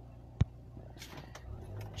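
Car engine idling steadily, heard from inside the cabin as a low hum, with one sharp click about half a second in.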